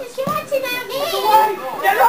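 Several voices shouting and calling at once during a football match, overlapping, with no clear words.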